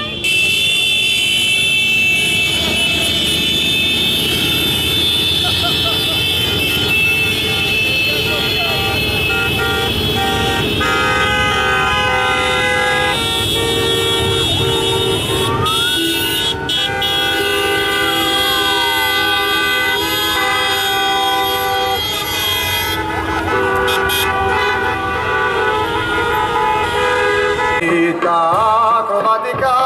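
Many vehicle horns sounding together and held on, with a horn tone that slides up and down in pitch a few times about halfway through, over a low rumble of engines.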